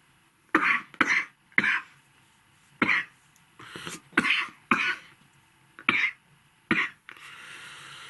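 A man coughing and clearing his throat in a string of about nine short, separate coughs. A softer, longer breath out follows near the end.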